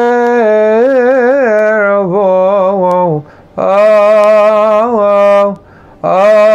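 A man singing a Coptic hymn solo and unaccompanied, in melismatic chant: long held vowels with quick ornamental turns in pitch. He pauses to breathe twice, a little after three seconds in and just before the end.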